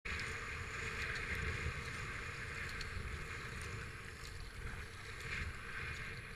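A kayak being paddled through river water: a steady wash of water splashing against the hull and paddle blades, with a low wind rumble on the microphone.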